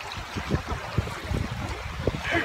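Shoreline ambience: small waves washing over shallow water, with an irregular low rumble of wind buffeting the microphone.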